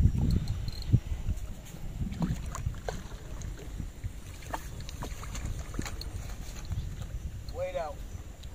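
Steady low wind rumble on the microphone, with faint scattered splashes and ticks as a hooked carp thrashes at the lake surface.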